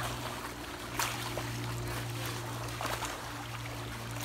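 Swimming-pool water sloshing and splashing as children churn it into waves, with a couple of sharper splashes, over a steady low hum.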